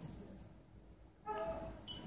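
One short, sharp, high-pitched click from the Tissot T-Touch Expert's side pusher being pressed near the end, as the watch steps from its battery check to its compass check in the test menu.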